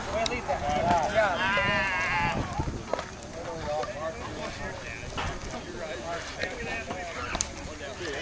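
Players' voices calling out across a softball field, unintelligible chatter with one drawn-out shout about a second and a half in, and a couple of sharp clicks.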